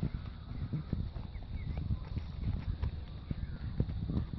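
Irregular low thumps of footsteps on grass and of a phone being handled while walking, with a few faint high chirps.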